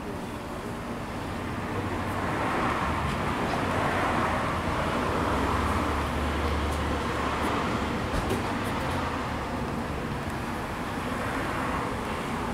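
Road traffic noise with a motor vehicle passing: a low rumble and engine-and-tyre noise that builds over a couple of seconds, peaks a few seconds in, then fades away.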